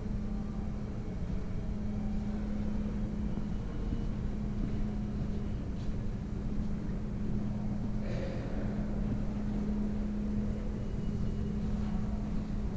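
Steady low hum and rumble of an underground subway station, with a brief higher-pitched hiss about eight seconds in.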